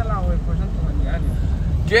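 Steady low rumble of a car moving, the engine and road noise heard from inside the cabin, with brief faint voices over it. A man starts singing loudly right at the end.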